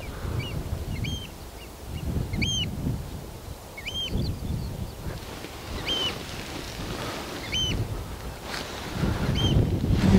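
A couple of Eurasian oystercatchers calling as they fly over: noisy, short, high piping calls, about a dozen of them at irregular intervals. Wind rumbles on the microphone underneath.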